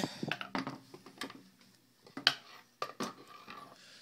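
Handling noise from a WGP Autococker paintball marker being turned over on a wooden table: a few scattered metallic clicks and knocks, the sharpest about two and a quarter seconds in.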